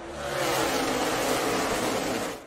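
A pack of NASCAR Xfinity Series stock cars' V8 engines running at full throttle. The sound swells in about a third of a second in as the field goes by, and the engine note slides slightly lower.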